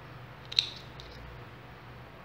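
Small spring-loaded thread snips clipping loose jute threads: one sharp snip about half a second in and a fainter one at about a second.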